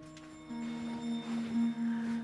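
Background music of sustained, ringing held tones, with a stronger low note coming in about half a second in.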